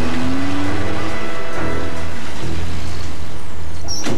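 An old van's engine revving up as it drives off, its pitch rising through the first second, under a film score with a steady low drone.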